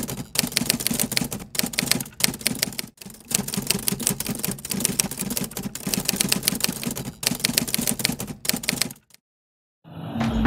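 Rapid typewriter keystroke sound effect, several quick clicks a second with a few brief pauses, cutting off sharply about a second before the end.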